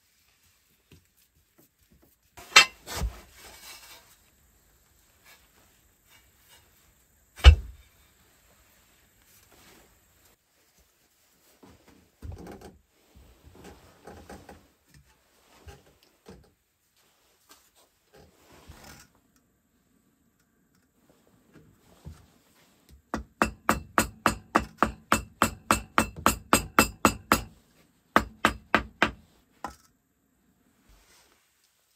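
Hammer tapping a brick down into its mortar bed on a brick stove to level it: a fast run of light, even taps, about three a second with a short break, in the last quarter. Earlier, a couple of single heavy knocks as the cast-iron hob plate is set onto the bricks, and some soft scraping.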